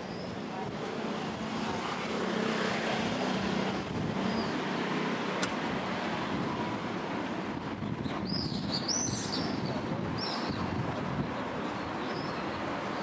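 Street traffic noise: a vehicle passing with a low engine hum, swelling and easing off over a few seconds. Quick high bird chirps come in a cluster about eight seconds in, with one more shortly after.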